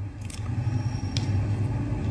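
Steady low hum with faint background noise in a pause between spoken phrases, with a single faint click about a second in.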